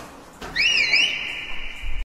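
A high whistle-like tone: about half a second in it swoops up and down in pitch, then holds one steady note.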